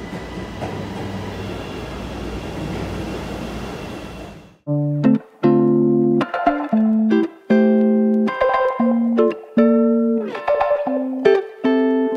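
A Chicago 'L' Red Line train pulling into an elevated station: a steady rumbling rush with a faint high squeal. About four and a half seconds in it cuts off and guitar-led background music takes over, plucked notes in a bouncy rhythm.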